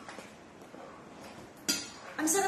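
A single sharp clink of tableware being handled at a table, about three-quarters of the way through, against otherwise quiet room sound.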